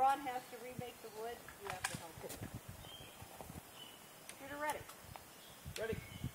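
Faint, unclear voices of people talking quietly in short snatches, with a couple of faint clicks about two seconds in.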